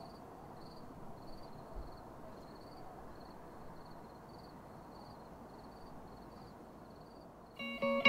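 Faint cricket chirping, about two chirps a second, over a low steady hiss. Near the end the chirping stops and an acoustic guitar comes in, louder.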